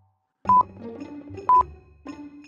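Countdown-timer sound effect: a short, high electronic beep with a click, once a second, twice here, over soft background music.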